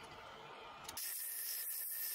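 Angle grinder with a cut-off disc cutting through a steel bar, starting about a second in as a steady high hiss, after a faint background hiss.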